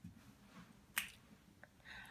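A single sharp click about a second in, with a fainter tick shortly after; otherwise near silence.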